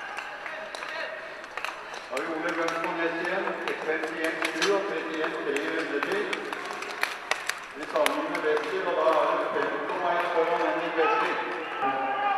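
Speech: a man talking, with a few sharp clicks scattered through it.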